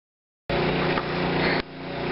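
Silence, then about half a second in a generator engine cuts in, running at a steady hum. Its level drops briefly and recovers past the middle.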